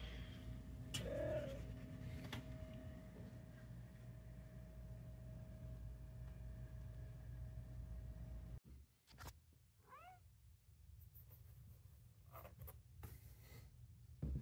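Domestic cat meowing: a short call about a second in and a longer call that rises and falls in pitch about ten seconds in. A steady low rumble runs under the first part and cuts off suddenly before the second call.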